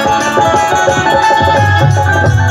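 Instrumental passage of live Bengali Baul folk music: a held melody line over a steady drum beat, with no singing.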